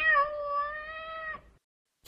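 A domestic cat meowing: one long, steady meow that fades out about a second and a half in.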